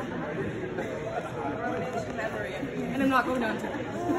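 Indistinct chatter of several voices in a large, echoing hall, with no clear words.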